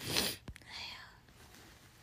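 A woman whispering close to the microphone: a strong breathy burst at the start, a short click about half a second in, then softer whispered sounds.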